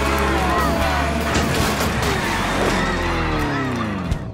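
Energetic background music with cartoon race effects. Over the last second and a half, the sound slides down in pitch, winding down to a stop.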